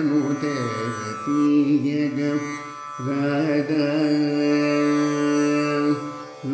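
Male Carnatic vocalist singing in raga Gaulipantu over a plucked tanpura drone. He starts with a wavering, ornamented phrase, then holds one long steady note, breaks off about halfway through, and holds another long note.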